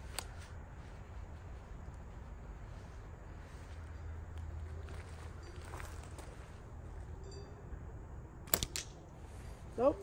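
A handheld slingshot trigger release firing: two sharp snaps close together about eight and a half seconds in as the trigger lets go of the pouch and the bands fly forward. There is a single click at the very start, as the trigger is set on the pouch.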